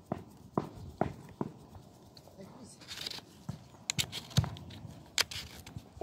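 A string of short, uneven thuds and scuffs, typical of footsteps on a dirt path and grass heard through a handheld phone's microphone, with a brief rustle about three seconds in.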